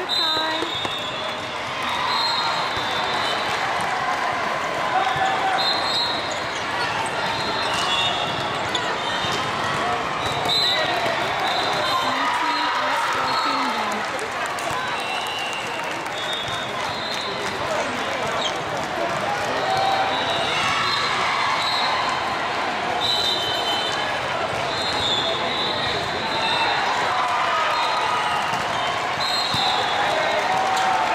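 The general din of a busy indoor volleyball hall: many overlapping voices of players and spectators across several courts. Through it come volleyballs bouncing and being struck, and short high squeaks of sneakers on the court.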